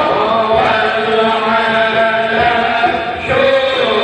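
A man's voice chanting a devotional recitation into a microphone, amplified through a PA, in long, slowly bending melodic lines.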